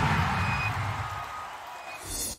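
Logo sting sound effect: the tail of a whoosh, a low rumble and an airy shimmer slowly fading, with a few brief high pings along the way.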